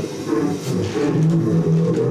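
Live jazz band playing, with sustained low notes that shift in pitch.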